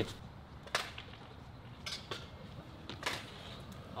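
A few faint, sharp knocks and clicks, spread apart, over a quiet outdoor background.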